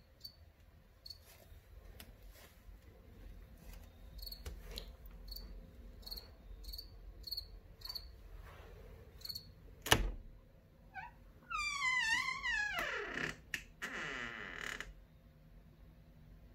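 A cricket chirping indoors: short, high chirps, about two a second at times, for the first nine seconds. About ten seconds in comes a single loud knock, then a falling, wavering squeak and a short rasp.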